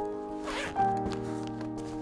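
Zip on a small fabric toiletry pouch being pulled shut, a short zipping sound about half a second in, over background music with sustained notes.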